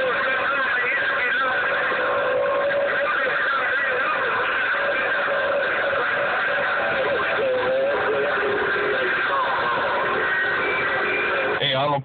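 Radio receiver speaker carrying a crowded channel: several stations transmitting at once, their voices garbled together with whistling carrier tones over steady static. The reception is rough because everybody is keyed up at the same time.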